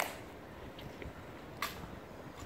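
Two sharp clacks from the Tomb sentinels' ceremonial drill, one right at the start and a second about a second and a half later.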